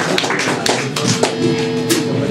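Electric guitar on a live club stage: scattered sharp taps and clicks with a few stray notes, then a held guitar note with overtones setting in a little past the middle.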